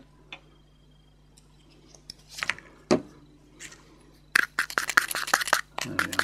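Small metal mixing tool scraping and clicking against a plastic cup while stirring thick acrylic texture paste, a rapid run of scrapes in the last second and a half, after a mostly quiet start.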